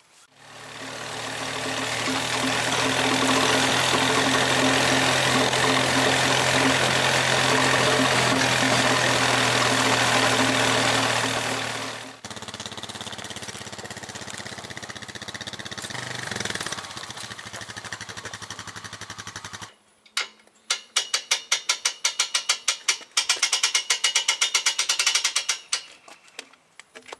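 Honda Foreman ATV engine running steadily up close while it tows a log on an ATV log arch, then heard farther off and quieter from about twelve seconds in. From about twenty seconds in, a fast, even run of ratchet clicks as the log arch's ratchet is worked.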